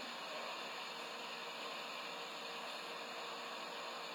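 Steady low hiss with no distinct events: the background noise of a phone recording in a small room.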